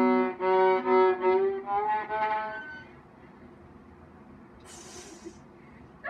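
A viola bowed just below the fingerboard, the bowing spot that gives a better tone than playing over it. Several short bow strokes on sustained notes, the pitch stepping up around two seconds in. The playing stops about halfway through, and a brief hiss follows later.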